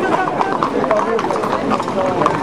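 Hooves of many Camargue horses clip-clopping at a walk on the road, a dense run of irregular knocks, mixed with many overlapping voices of people talking.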